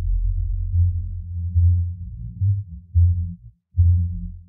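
Isolated bass line playing alone, with no other instruments: deep, sustained low notes that swell and re-attack in a slow pulse. A short gap comes just before the end.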